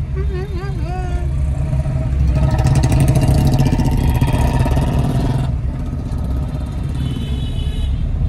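Steady low engine and road rumble heard from inside a moving car's cabin, with a louder passage of noise from about two to five and a half seconds in.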